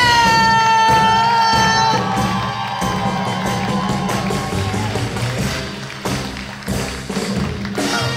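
Upbeat walk-on music over a theatre sound system, with a steady beat, under some audience cheering. A long high note is held through the first two seconds.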